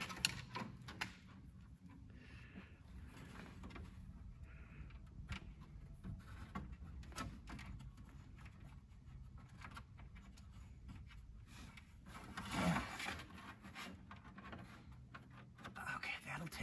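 Faint rustling and small clicks of wiring being fed and pulled through the back of a 1961 Lancia's dashboard, over a steady low hum. A brief mutter comes about twelve seconds in.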